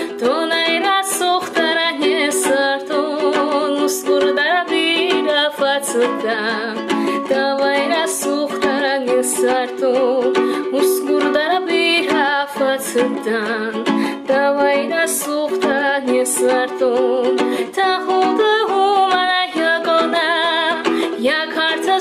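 A woman singing an Ossetian song with a wavering vibrato, accompanying herself on a strummed ukulele.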